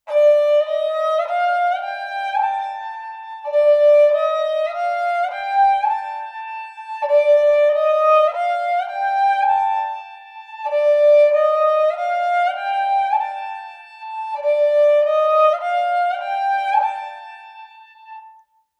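Sarinda, a bowed folk fiddle, playing a sargam practice exercise: a short phrase of notes stepping upward, played five times in a row.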